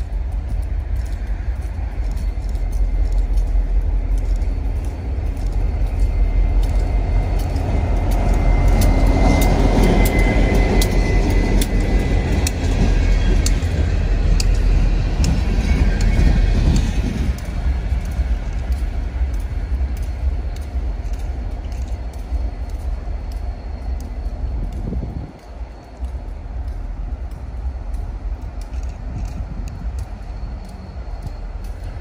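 A short freight train of a diesel locomotive and freight cars rolling past, a steady rumble that builds to its loudest from about eight to seventeen seconds in and then eases, with repeated sharp clicks of wheels over the rails.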